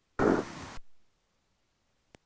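A half-second burst of rumbling cockpit noise from a Piper J-3 Cub as the voice-activated intercom microphone opens briefly about a quarter second in. The line then gates shut to silence.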